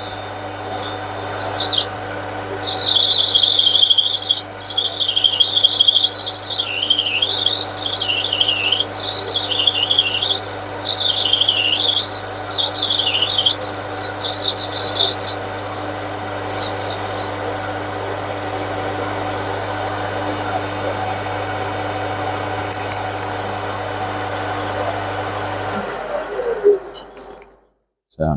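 Metal lathe running with a steady motor hum while the tool turns a brass bar down, a wavering high-pitched whine from the cut rising and falling from about two seconds in to about thirteen. Near the end the lathe is switched off and the hum dies away as the spindle runs down.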